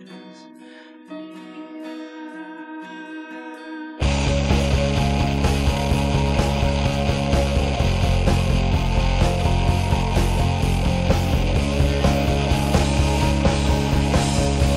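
Indie rock demo recording: a quiet, sparse passage of held tones. About four seconds in it breaks suddenly into loud full-band rock.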